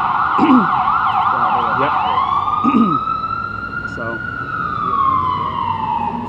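Emergency vehicle siren in a fast yelp, switching about two seconds in to a slow wail that rises and then falls.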